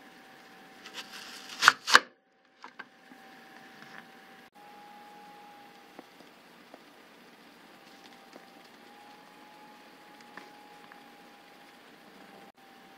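Pampered Chef Veggie Wedger's serrated stainless blades pressed down through a whole peeled onion: a few crackling crunches building to two sharp snaps about two seconds in. After that only quiet room tone with a faint steady hum.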